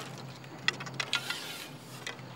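Light handling noise: a few small clicks and a brief rustle from the fishing pole and its line being handled.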